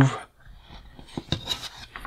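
Faint plastic clicks and rubbing as the hinged gun on a toy's plastic turret canopy is pivoted by hand, with a few light ticks a little over a second in.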